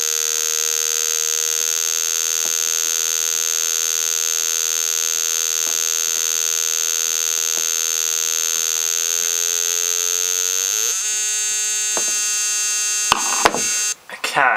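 Flyback transformer driven by a 555-timer ignition coil driver, whining steadily at its switching frequency as a buzzing tone with many overtones. Near the end the pitch rises and then jumps as the driver's frequency is turned up, followed by a few sharp clicks.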